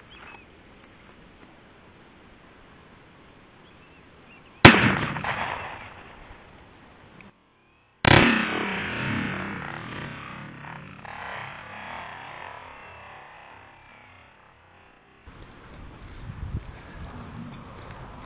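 Two sharp rifle reports from a .223 bolt-action rifle, about three and a half seconds apart, each a single loud crack trailing off in a long echo.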